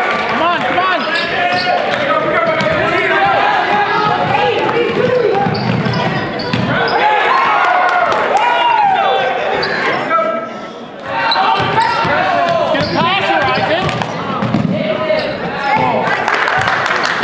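Basketball dribbled on a hardwood gym floor, under the talk and calls of players and onlookers in a large hall. The noise dips briefly just after ten seconds.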